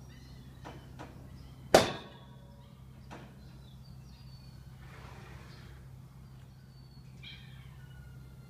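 A horse in a steel-barred stall bangs against the metal once, loudly and sharply, with a short ringing tail about two seconds in. This is the mare fighting with the horse in the next stall. A few lighter knocks come before and after it, over a steady low hum.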